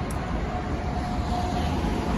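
Steady low outdoor background rumble with no distinct events. A faint steady tone joins it about half a second in.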